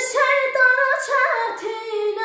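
A young girl singing solo in Azerbaijani, a run of short notes stepping up and down in pitch, picking up right after a brief breath pause.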